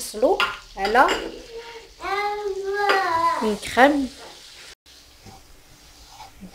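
Melted butter and flour sizzling as they are stirred together with a wooden spatula in a nonstick frying pan, cooking into a roux for a white sauce. A voice speaks over it in the first four seconds.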